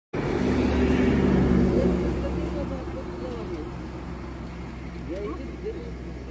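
A motor vehicle's engine passing close by, loudest in the first two seconds and then fading away.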